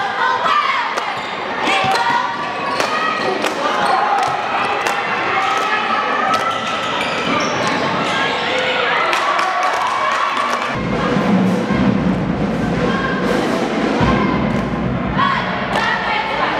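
A basketball bouncing on a hardwood gym floor, with many short knocks, over many overlapping voices in the gym. About eleven seconds in, a deep low sound joins and carries on.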